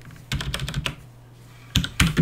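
Computer keyboard keystrokes as a command is typed and a typo is backspaced and corrected. There is a quick run of key clicks in the first second, a short pause, then more keystrokes near the end.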